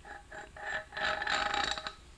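Steel parts of a threaded-rod bearing puller and a just-removed ball bearing clinking and ringing as they are handled. There are a few short clinks, then a longer ringing scrape in the second half.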